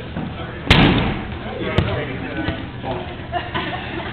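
Rubber dodgeballs smacking in a hard-floored hall: a loud smack with an echoing tail under a second in, then a sharper, shorter smack about a second later. Players' voices carry on in the background.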